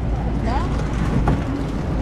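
Steady low rumble of an airliner cabin, with passengers' voices faintly in the background.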